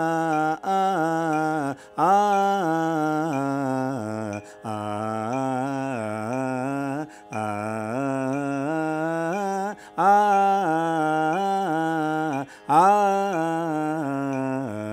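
Carnatic vocal exercise sung in akaram, the swara phrases carried on the open vowel "aa". It comes in gliding, wavering phrases of two to three seconds each, with a short breath between them.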